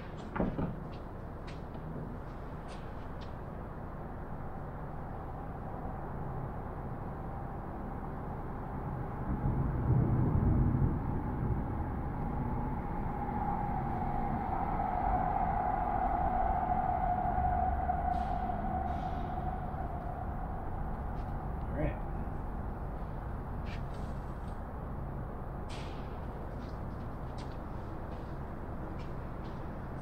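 Light clicks and knocks from hands fitting the plywood firewall and its clamps, over a steady low background hum of a large hall. A louder low rumble comes about ten seconds in, and a mid-pitched hum swells and fades in the middle.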